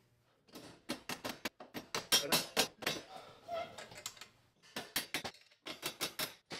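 Irregular metallic clicks and clinks of a hand tool, bolts and washers against steel crash-guard brackets as the guards are bolted onto the motorcycle frame. The clicks come in quick clusters, with a pause of about a second and a half two-thirds of the way through.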